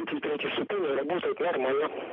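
Speech only: a voice talking without pause, heard as over a radio link.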